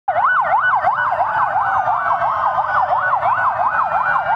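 Several police sirens sounding together in a fast yelp, each sweeping up and down about three times a second.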